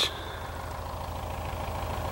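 Steady low engine-like hum with a faint even hiss over it, unchanging through the pause.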